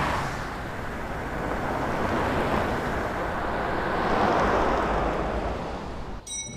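Street traffic: cars passing by, the tyre and wind noise swelling at the start and again around four seconds in as each goes past.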